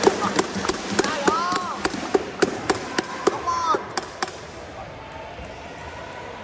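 Badminton play in a large hall: a quick string of sharp racket hits on shuttlecocks and short shoe squeaks on the court mat, with voices in the background. It thins out after about four seconds.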